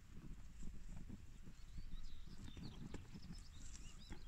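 Low, irregular thuds and rustling from cattle moving and feeding at a bush close by. From about halfway a small bird chirps in quick, short, high notes.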